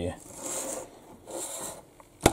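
Handling noise: two short scraping rubs, about half a second and a second and a half in, as an LED module and the camera are moved by hand.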